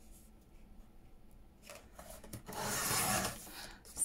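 Sliding paper trimmer's blade drawn along, slicing through a sheet of 200 gsm card: one rasping cut lasting about a second, starting a little past halfway.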